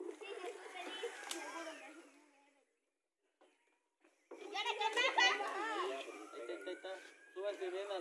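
Quiet, indistinct chatter of children and adults. It drops out completely into dead silence about two seconds in, then resumes a little past the middle.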